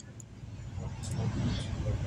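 Low rumble of a passing vehicle, growing louder about halfway through, with faint voices beneath it.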